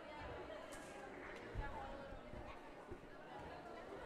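Faint chatter of many voices echoing in a sports hall, with one dull thump about one and a half seconds in.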